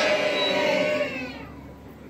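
Devotional singing with music ending on a long held note that bends downward and fades out about a second and a half in. Only a faint background remains after.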